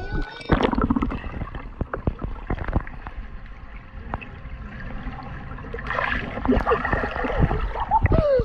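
Pool water splashing and gurgling around a camera held at the waterline, turning muffled and bubbly while the camera is under the surface. It starts suddenly about half a second in, as a run of short splashes and bubble clicks.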